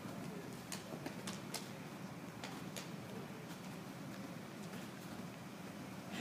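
Quick, light footsteps on indoor artificial turf during an agility-ladder drill: a scattering of short taps over the steady background noise of a large indoor hall.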